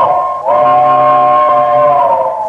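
Steam locomotive whistle sounding a chord: a short blast, then a long held one that sags slightly in pitch as it fades.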